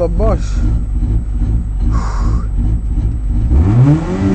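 Rally car engine heard from inside the cabin, idling with a low, uneven pulsing beat. Near the end it is revved up sharply and held at high revs, ready for the stage start.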